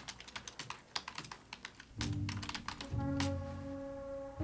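Rapid typing on a computer keyboard, a quick run of key clicks. About halfway through, background music with low, sustained bass notes comes in under the last few keystrokes.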